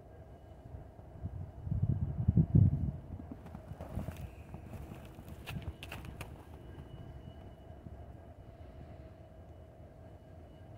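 Footsteps crunching through snow, heaviest about two to three seconds in. A few sharp clicks follow near the middle, and after that the steps fade to faint.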